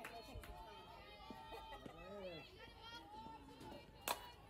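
Faint, distant voices of players and spectators calling out and chattering.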